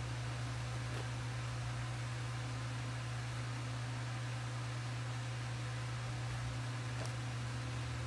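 Electric fan running: a steady low hum under an even hiss, unchanging throughout.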